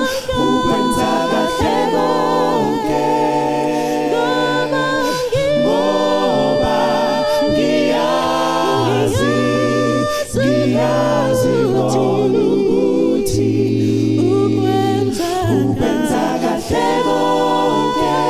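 A cappella vocal group singing in close harmony through microphones: several voices holding long notes with vibrato over a deep bass part.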